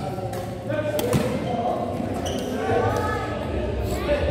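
Badminton rackets striking a shuttlecock in a doubles rally: a few sharp smacks, the loudest about a second in, over voices chattering in a large hall.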